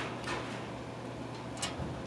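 Combination dial on a metal locker being turned by hand, giving a few faint clicks, with a sharper click about one and a half seconds in.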